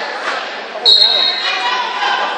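A referee's whistle: one short, sharp blast about a second in, a steady high note lasting about half a second. It is heard over crowd voices echoing in a gym.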